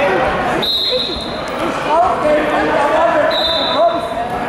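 Two short, high, steady whistle blasts, one just under a second in and a longer one near the end, heard over shouting voices in a wrestling hall.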